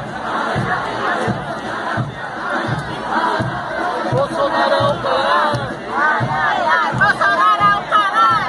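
A street carnival crowd shouting and singing over a steady low drum beat, about three beats every two seconds. The voices grow louder in the second half, with rising and falling shouts.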